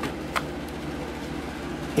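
Steady low background hum and hiss, with one small click about a third of a second in.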